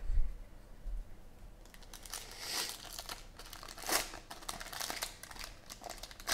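Foil wrapper of a Panini XR football card pack crinkling and tearing in bursts as it is opened by hand, after a dull thump near the start as the pack is picked up.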